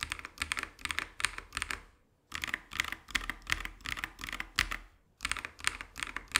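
KiiBOOM Phantom 81 mechanical keyboard, with a clear acrylic case and silicone gasket mount, being typed on: a fast run of key clicks with brief pauses about two seconds in and near five seconds.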